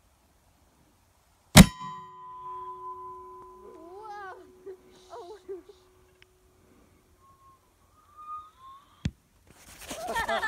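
A bowling ball mortar fires with one sharp, loud bang about a second and a half in, and its metal tube rings on with a steady tone that fades over the next few seconds. About nine seconds in there is a single short, sharp thud, the bowling ball landing.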